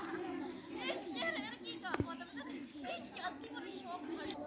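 Many children's voices chattering and calling out over one another, with a single sharp click about halfway through.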